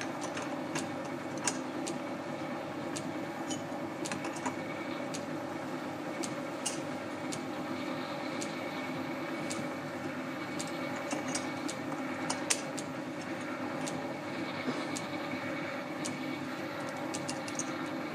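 Scattered light metallic clicks of brass and steel gear blanks being handled and slid onto a mandrel in a lathe chuck, over a steady machine hum.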